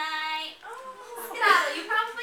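A young woman's voice singing, holding one steady note at the start and then moving on through further sung phrases.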